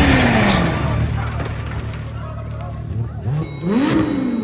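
Lykan HyperSport supercar's engine rumbling low as the car comes to rest among crash debris inside a building, loudest at the start and easing off, with people's voices over it.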